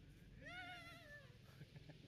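A macaque gives one faint, wavering, whining call about a second long.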